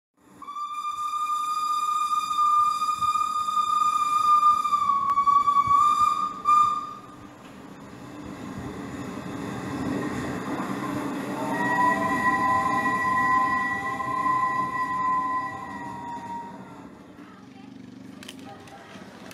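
Steam locomotive whistle blowing a long blast of about six seconds, then, after a few seconds of low train rumble, a second long blast of about five seconds on a lower whistle sounding several notes together, sagging slightly in pitch at the end.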